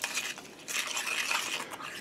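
A spoon stirring a small bowl of mustard-and-syrup glaze: soft, uneven scraping with light clinks against the bowl.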